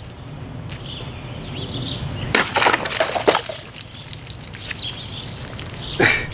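Fully serrated Cold Steel Hold Out XL folding knife slashing through two full plastic water bottles: two sharp cuts about a second apart, near the middle.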